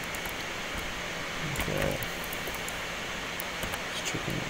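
Steady hiss of a desk microphone with faint, scattered clicks from a computer mouse and keyboard, and a short hummed voice sound near the middle.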